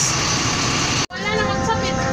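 Steady vehicle noise beside a large coach bus, cut off sharply about a second in. Background music with held notes follows.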